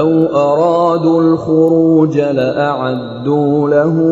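Chanted Quran recitation: a single voice reciting in long, melodic held notes with slow rising and falling pitch bends.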